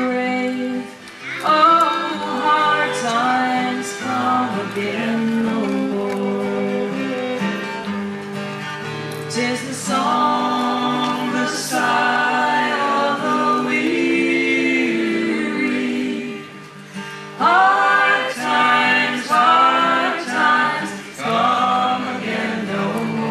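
A woman and a man singing a slow folk song together over a strummed acoustic guitar. A fiddle comes in near the end.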